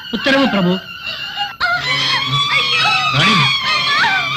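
A short spoken phrase, then an abrupt cut about one and a half seconds in to drawn-out, wavering cries or wails from a voice over a steady low drone.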